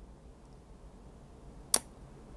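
Quiet room tone with a single short, sharp click near the end.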